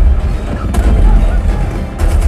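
War-film battle soundtrack played through a home-theater system with dual Bowers & Wilkins CT SW15 15-inch subwoofers: heavy, continuous deep bass from tank fire and explosions, with a sharp blast about a third of a second in.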